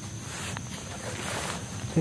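Rustling noise that swells about half a second in and fades by a second and a half, over a steady low hum.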